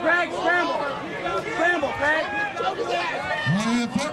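A crowd of spectators and cornermen shouting and calling out over one another, several voices overlapping, with one louder shout near the end.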